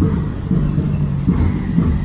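Road traffic passing close by: motor vehicle engines and tyres making a steady, loud low rumble.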